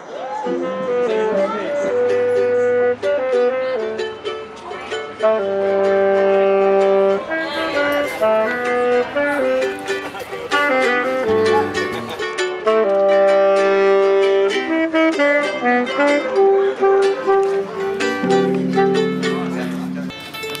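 A choir singing in harmony, holding long chords that change every second or two.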